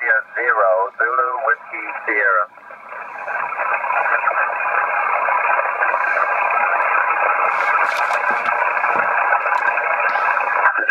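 Ham radio transceiver receiving on voice (SSB): a voice over the radio for the first couple of seconds, then the hiss of band static through the receiver's narrow filter, rising over a couple of seconds and then steady.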